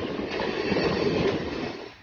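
Electric multiple unit commuter train running along the track, its wheel and rail noise heard loud through an open carriage window, then dropping off sharply near the end.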